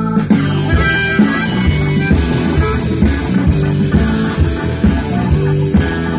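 Live blues-rock band playing an instrumental passage, guitar to the fore over a steady beat.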